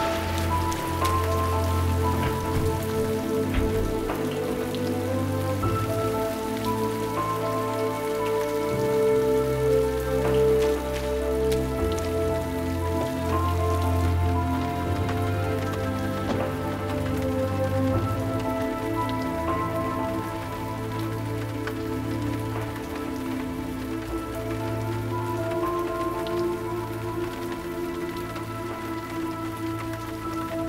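Steady rain falling, with a slow soundtrack score of held notes and low bass notes laid over it.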